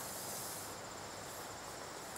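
A steady, high-pitched chorus of insects chirping and trilling, with a fine rapid pulsing coming in about a third of the way through.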